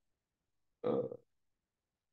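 A man's single short hesitant 'uh', a filled pause in speech, with silence before and after it.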